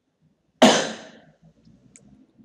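A person coughing once, a short loud cough about half a second in that fades quickly.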